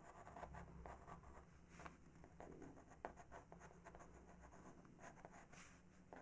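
Faint scratching of a Faber-Castell PITT pastel pencil on PastelMat card, drawn in short, irregular strokes.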